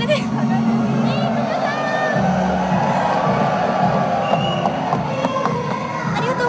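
Concert audience cheering and chattering, with music playing and a few high voices over it.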